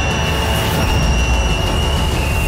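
Film sound effects: a loud, deep rumble under a steady, high-pitched screech.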